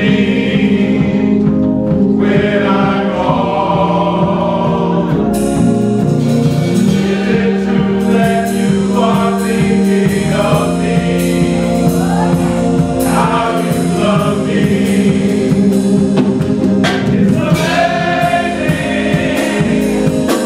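Men's gospel choir singing in full harmony, with instrumental accompaniment; a percussion beat comes in about five seconds in.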